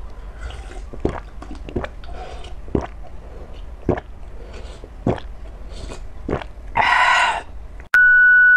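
A person drinking canned yellow peach syrup straight from the can: small swallowing gulps, about one a second. Near the end comes a short, louder vocal 'ah' of breath and voice.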